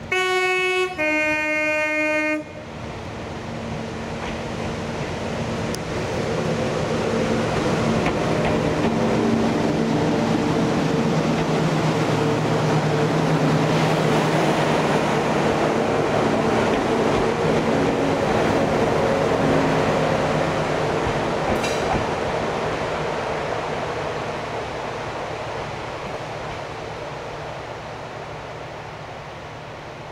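Yellow on-track maintenance vehicle sounding a loud two-tone horn, a higher note then a lower one, for about two seconds. It then runs past with engine and wheel noise that builds to a peak midway and fades away as it recedes, with a brief metallic squeal about two-thirds of the way through.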